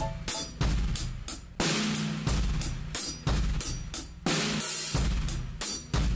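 Close-miked acoustic drum kit played in a steady groove of kick, snare and hi-hat, with Zildjian cymbals and louder accented hits about once a second.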